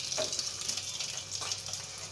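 Boiled eggs frying in a little hot oil in a nonstick pan, the oil sizzling steadily.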